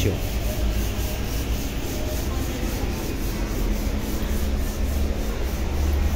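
Kubota Grandel GL30 tractor's diesel engine running steadily: an even low rumble with hiss over it.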